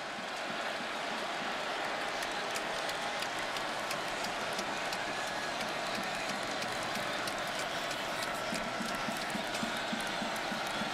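Football stadium crowd: a steady din of many voices with scattered sharp claps and shouts.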